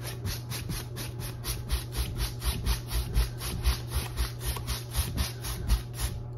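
A large paintbrush scrubbing rapidly back and forth across a stretched canvas, about five strokes a second, working a thin wet pink glaze into the painting. A steady low hum runs underneath.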